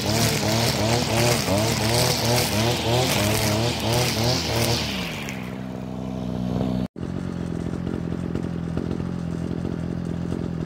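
Brush cutter engine revving up and down in quick surges, about two a second, as it cuts through weeds, then dropping to a steady idle about five seconds in. The sound cuts out for an instant just before seven seconds, and the idle carries on.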